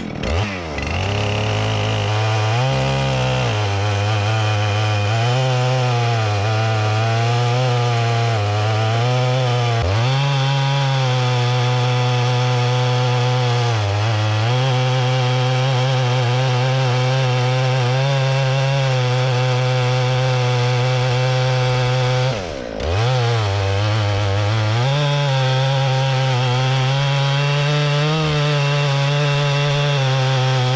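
Big chainsaw on an Alaskan mill, revving up and then ripping lengthwise down a seasoned timber at full throttle under load. Its pitch sags a few times as it bites. A little past two-thirds of the way through the engine briefly falls off and then picks back up.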